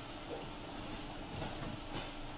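Faint steady room noise in a pause between spoken sentences, with no distinct event.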